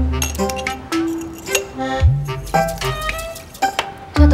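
Light, playful background music: short plucked and chiming notes at changing pitches over a low bass note that comes in at the start and again about two seconds in.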